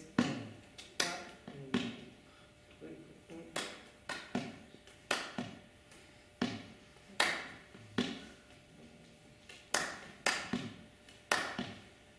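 A slow, syncopated rhythm of hollow hand-struck knocks: about a dozen strikes, each a low thud with a short ring, falling in groups of three with pauses between. It is the six-count ipu heke (Hawaiian gourd drum) pattern the piece is built on.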